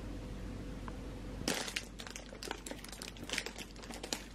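A thin plastic bag of soybean sprouts crinkling and crackling in irregular bursts as it is handled and its twist tie undone, starting about a second and a half in after a steady low hum.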